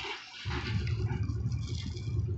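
Soft, steady rustling of a plastic-wrapped bag of flour as pet mice nose and chew at it, starting about half a second in after a brief hush.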